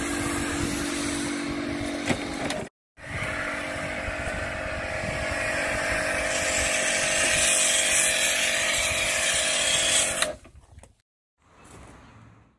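Pressure washer running with a steady motor hum while its lance sprays snow foam onto a car. It cuts out suddenly a little under three seconds in, starts again, and stops about ten seconds in.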